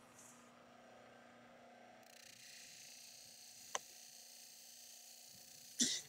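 Very faint background noise with a single short click a little before the four-second mark.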